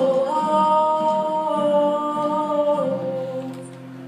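A solo singer holding long sung notes, with acoustic guitar accompaniment. The voice steps up to a sustained note just after the start, drops to a lower one near the end, and fades out.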